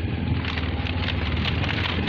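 Woven bamboo bridge slats clattering in a quick, uneven run of clicks under a motorbike's tyres, over the bike's steady low engine hum.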